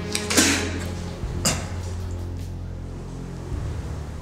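Film score music held on steady low bass tones, with a sharp noisy hit near the start that fades over about half a second and a shorter sharp click about a second later.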